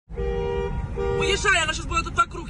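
A car horn honks twice, two short steady blasts a little under a second apart, over the noise of street traffic.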